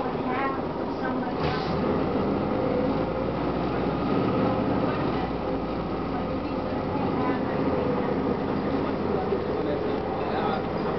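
Cabin sound of a 1999 Gillig Phantom transit bus under way: its Detroit Diesel Series 50 engine and Allison B400R automatic transmission running steadily, with road and body noise.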